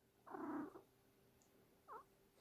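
A domestic cat gives one short, soft vocal sound lasting about half a second as it stirs in its sleep, followed by a faint brief sound near the end.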